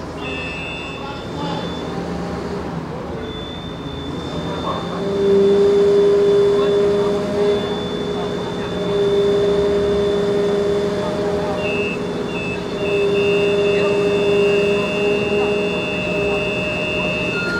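Fire engine's aerial ladder under hydraulic power, a steady mechanical whine over an engine hum. It grows louder about five seconds in and comes and goes in stretches of a few seconds as the ladder basket is moved.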